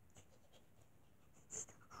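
Near silence with a few faint ticks of plush toys being handled, and a brief soft hiss near the end.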